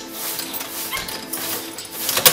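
A key being worked in a door lock, with faint scrapes and a couple of small squeaks about halfway through, over sustained background music.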